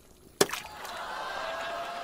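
A tossed jar: a sharp knock about half a second in, followed by a steady airy hiss with a faint whistling tone.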